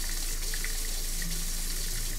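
Kitchen faucet running a steady stream of water into the sink.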